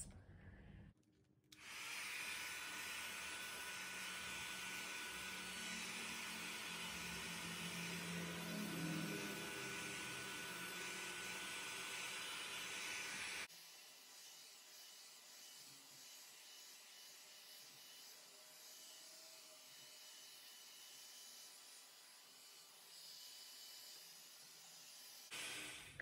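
Handheld Parkside electric heat gun running, a steady blowing hiss of its fan and hot air. It cuts off abruptly about halfway through, leaving only a faint hiss.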